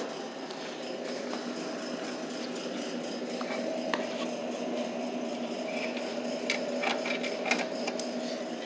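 Steady mechanical hum from a soda vending machine, with a few light clicks.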